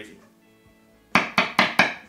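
A metal screwdriver tapping on a Stratocaster-style guitar's pickup, amplified through the guitar amp: four quick, loud taps starting about a second in, over a faint amp hum. The taps coming through loudly show that the selected pickup is switched on and working.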